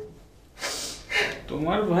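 A woman's two sharp, breathy gasps, about half a second and a second in, then a voice beginning to speak near the end.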